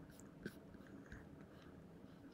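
Near silence: faint room tone with a few small ticks, the clearest a single click about half a second in.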